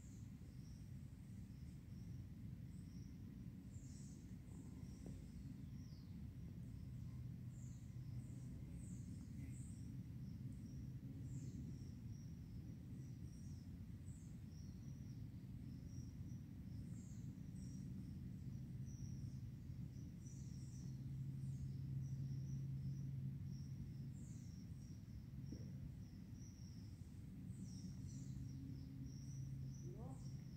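Faint outdoor ambience: many short, high-pitched chirps repeating over a low steady rumble and hum.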